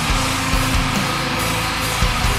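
Death metal played by a full band: heavily distorted guitars and bass over drums, with low drum hits falling several times a second and no vocals.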